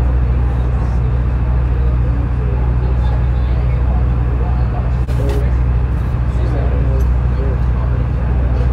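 Tour boat's engine running with a steady low hum, under faint chatter of other passengers.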